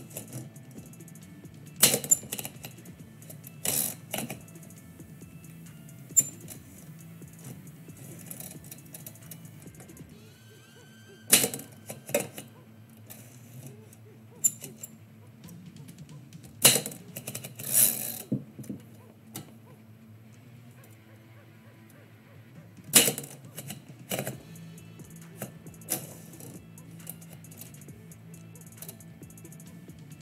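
Manual typewriter being typed on in short, scattered bursts of sharp key strikes with long pauses between them, over quiet background music.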